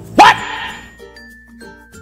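A man's loud, short shouted "What?" with a sharp upward sweep in pitch, followed by quiet background music.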